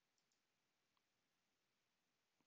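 Near silence, with a few very faint clicks of a computer mouse.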